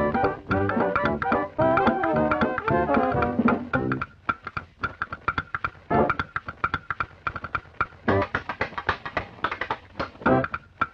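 Background music with guitar and bass: a full, dense band passage for about four seconds, then thinning to a sparse, rhythmic guitar part with occasional fuller chords.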